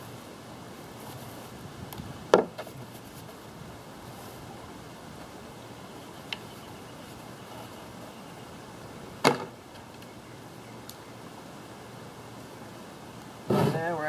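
Two sharp knocks on the plywood lid, about seven seconds apart, as things are set down on it during epoxy brushing, over a steady low hiss.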